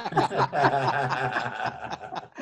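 A man laughing heartily, a run of chuckles and snickers.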